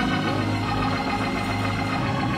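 Church organ holding sustained chords over a steady low bass note.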